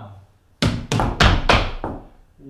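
Tap dancers' feet striking a wooden floor in a quick run of about half a dozen sharp taps, starting just over half a second in: the beginner tap step 'left, right, left, heel'.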